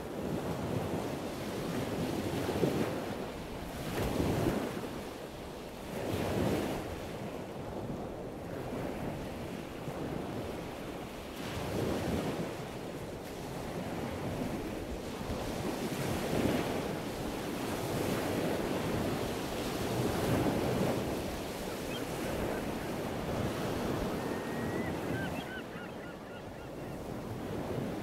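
Sea waves breaking and washing in, swelling every few seconds, with wind. A few faint high bird calls come near the end.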